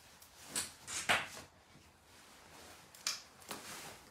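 A few short rustling, scraping handling noises: one about half a second in, a longer one about a second in, and two more after about three seconds.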